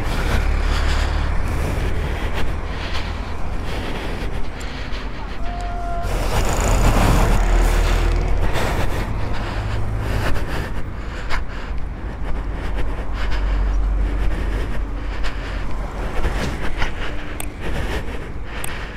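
Road traffic noise with a steady low wind rumble on the microphone. A vehicle passes loudly about six to eight seconds in.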